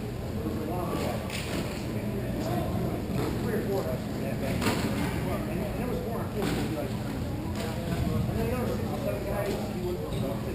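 Echoing hockey-rink ambience in a large hall: distant players' shouts and chatter over a steady low hum, with a few sharp clacks of sticks and puck.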